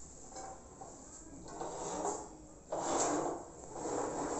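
Bread maker's metal baking pan being taken out of the machine and handled: two short spells of handling noise, the second and louder one near the end.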